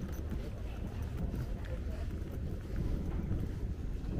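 Wind rumbling on a small handheld camera's microphone, with faint voices in the distance.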